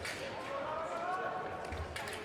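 Fencers' feet thumping on the piste during a foil bout, with a dull thud near the end as a lunge lands. A person's voice calls out over it, one drawn-out call rising and falling for about a second.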